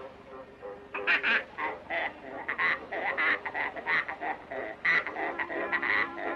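Cartoon sound effect of a sow squeezed like an accordion: a quick run of short, nasal notes played as a tune, starting about a second in.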